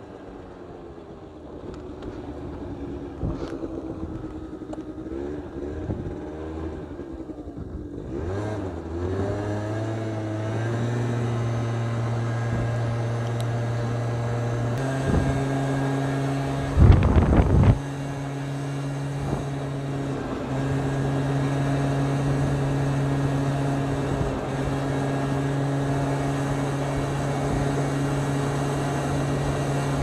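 Aprilia SR50 scooter's small two-stroke engine under load on an uphill climb: its note rises and falls for the first few seconds, then climbs and holds steady, the little engine labouring on the slope. About seventeen seconds in, a brief loud rush cuts across it.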